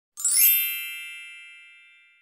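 A single bright, shimmering chime sound effect: struck once just after the start, ringing with many high tones, then fading slowly away.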